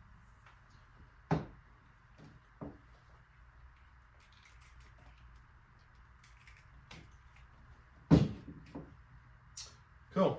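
Scuba regulator parts being handled: a few sharp knocks as rubber hoses, fittings and second stages are coiled and put down on a table, the loudest about eight seconds in, over a faint steady hiss.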